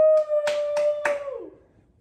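Girls cheering with one long, high held shout that fades away about a second and a half in, with three sharp claps in the middle of it.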